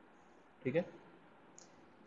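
A single short, faint click about one and a half seconds in: a keystroke on a computer keyboard while code is being typed.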